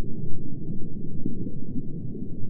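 A deep, muffled sci-fi rumble that flickers unevenly in loudness, with no clear pitch, as a spaceship intro sound effect.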